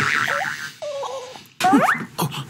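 A few short comic sound effects that slide in pitch. One dips about a third of a second in, one falls around the one-second mark, and a steep rising sweep comes near the end.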